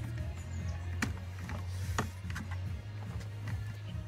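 Background music with a low bass line, and a few sharp clicks.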